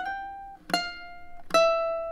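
A ukulele picked fingerstyle on the A string: a note slid up to the 10th fret, then two single plucked notes stepping down to the 8th and 7th frets, each left to ring.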